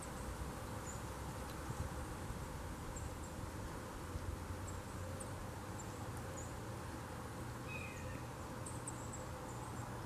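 Steady outdoor backyard ambience: a continuous low hum and insect buzz, with faint scattered high chirps and one short, falling chirp about eight seconds in.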